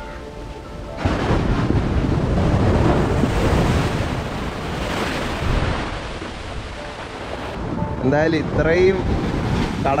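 Sea waves surging in and washing over sand and around wooden posts, with wind rumbling on the microphone, starting abruptly about a second in. A man's voice breaks in near the end.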